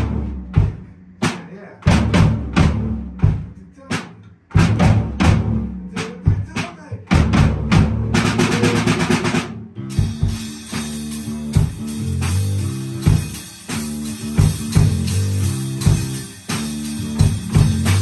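Rock drum kit and electric bass playing together: separate heavy band hits with short gaps between them, then a fast snare roll about eight seconds in that leads into a steady, continuous groove of drums and bass.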